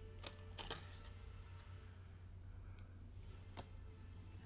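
Quiet room tone with a steady low hum and a few faint, short clicks from a playing card being handled.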